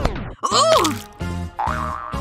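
Background music with a comic sound effect: a fast falling whistle-like glide at the start, then a springy boing that rises and falls with a burst of hiss about half a second in.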